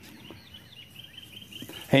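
Faint high chirping in quiet rural outdoor ambience, with a quick run of short chirps in the second half.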